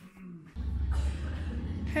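Outdoor street ambience: a steady low rumble that sets in about half a second in, with a haze of city noise above it, until a voice starts at the very end.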